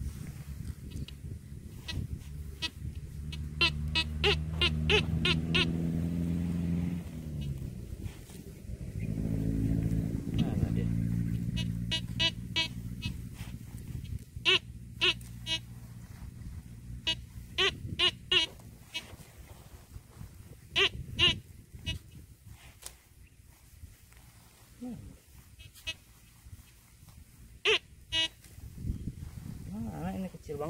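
Metal detector giving short, high-pitched beeps in bursts of several as the search coil passes over a small metal target in the dirt. A low engine drone rises and falls in the background during the first dozen seconds or so.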